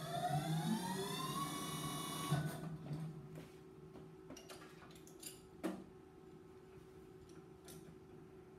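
Instron universal testing machine's crosshead drive motor running with a whine that rises in pitch, then cutting off about two seconds in. A few light clicks and knocks follow as the grips and specimen are handled, over a steady low hum.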